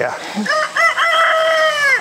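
A rooster crowing once: a single call of about a second and a half that holds steady and drops in pitch at the end.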